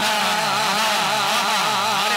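A man singing a line of an Urdu naat into a handheld microphone, his voice held and wavering up and down in long melismatic turns without a break.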